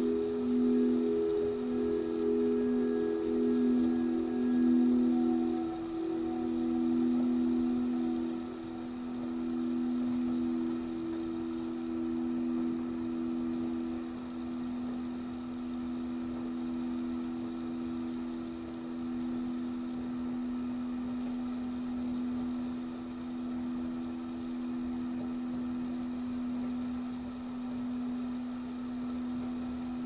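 Singing bowl ringing on after a strike: two low steady tones with a slow pulsing waver. The higher overtones die away over the first several seconds while the lowest tone holds on.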